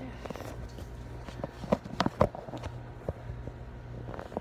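Handling noise from a phone camera being gripped and moved: a scatter of short knocks and taps, the loudest two close together about two seconds in, over a steady low hum.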